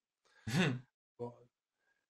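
A short murmured 'mmh' of agreement from a listener in a conversation, followed about half a second later by a briefer vocal sound.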